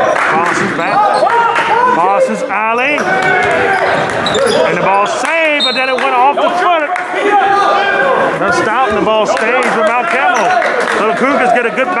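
Basketball bouncing on a hardwood gym floor during play, amid a steady mix of players' and spectators' voices echoing in the gym.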